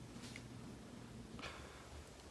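A quiet pause: faint room tone with a low steady hum and no distinct sound event.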